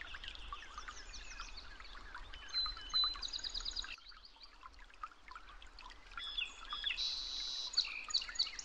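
Many small birds chirping and twittering, calls overlapping, with a quieter stretch around the middle.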